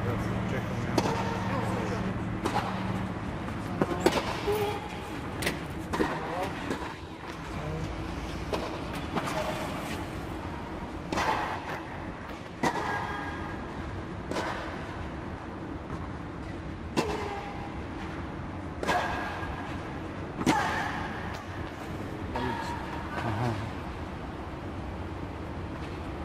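Tennis balls being struck by racquets in a rally: sharp hits at uneven intervals, one to two seconds apart in places. Voices call out between some shots, over a steady low hum.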